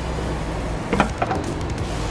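A steady low hum with a single sharp knock about a second in.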